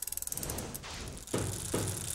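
Rapid, even ratcheting clicks like a bicycle freehub coasting, fading out about a second in, followed by two short soft knocks.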